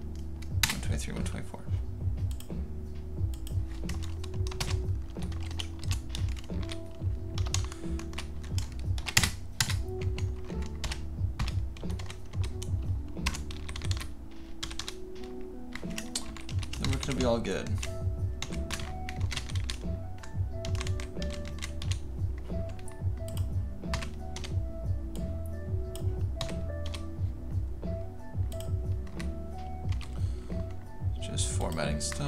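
Computer keyboard typing: irregular runs of quick keystrokes throughout, over steady background music.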